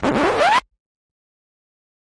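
A short edited sound effect: a scratch-like upward pitch sweep lasting about half a second, which cuts off abruptly into dead silence.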